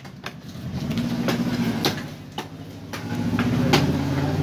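Several sharp chops of a heavy knife cutting through a large fish on a wooden log block. Under them, an engine hum swells up twice, once about a second in and again near the end.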